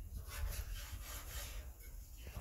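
A knife cutting raw fish on a wooden cutting board: a series of scraping, sawing strokes that ease off near the end.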